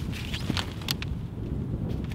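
Wind buffeting the microphone, with a few light clicks and rustles as a folded pop-up drone racing gate's fabric and hoop are handled and twisted open.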